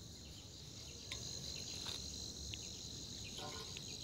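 Faint, steady high-pitched chorus of crickets, with a few faint short ticks scattered through it.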